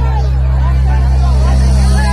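A DJ sound system's bass speakers hold one loud, steady low bass note, with crowd chatter over it.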